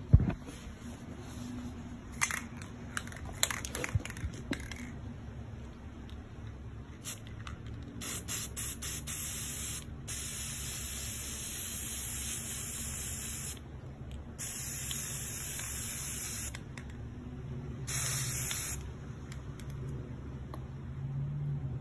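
An aerosol spray paint can sprays in bursts: a few short puffs about eight seconds in, then two long hisses of two to three seconds each and a short one near the end. A sharp knock right at the start, and scattered clicks and knocks in the first few seconds, come before the spraying.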